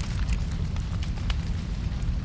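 Experimental sound-art album track: a dense, steady low rumble with short crackles and clicks scattered irregularly over it.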